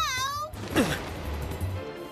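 A cartoon cat character's wavering, drawn-out meow, then a whoosh with falling pitch about half a second in, over background music.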